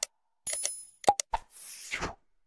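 Sound effects of an animated like-and-subscribe reminder. A click comes right at the start, a short bell-like ding about half a second in, and two quick pops around one second. A soft whoosh fills the last half second.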